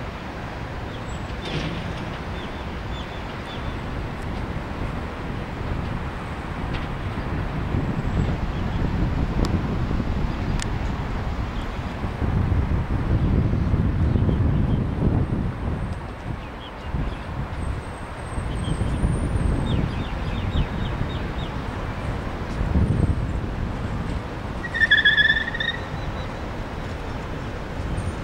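Wind buffeting the microphone in uneven low gusts, strongest around the middle; a short high chirp about 25 seconds in.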